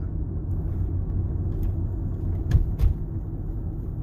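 Steady low road and tyre rumble heard inside the cabin of a Tesla electric car driving at about 24 mph. A little past halfway come two short thumps about a third of a second apart.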